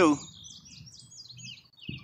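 Small birds chirping: a run of short, quick, high chirps one after another, with a soft low knock near the end.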